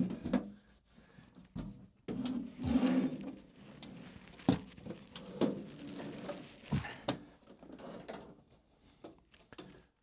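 Metal knocks, clicks and scraping from a rack-mounted computer chassis and its rails being shifted and worked loose in a rack cabinet. A longer scrape comes about two to three seconds in, between scattered sharp knocks.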